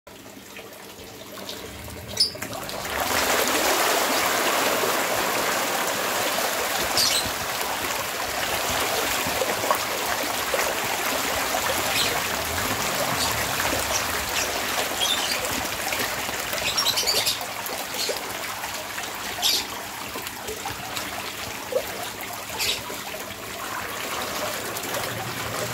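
A dense mass of catfish churning at the surface of a crowded tarpaulin pond: steady watery splashing and sloshing that comes up about three seconds in, with sharper single splashes every couple of seconds, easing off in the second half. A thin stream of water trickles into the pond underneath.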